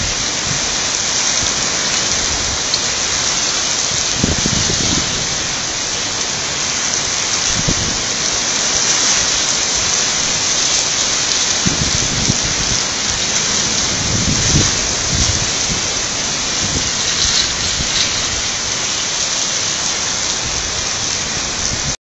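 Heavy rain falling steadily in a thunderstorm, a loud even hiss, with low rumbles of thunder swelling and fading several times.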